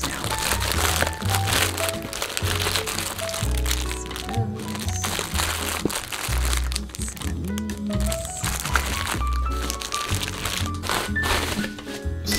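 Background music with a steady bass line, over the crinkling and crackling of plastic packaging as bagged shaker keychain charms are handled and shifted in a box.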